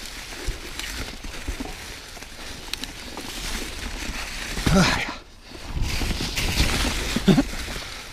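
Santa Cruz Hightower LT mountain bike rolling over dry fallen leaves on a dirt trail: a steady rustle and rumble from the tyres, with scattered clicks and knocks from the bike. The rider makes two short vocal sounds, one about halfway through and one near the end.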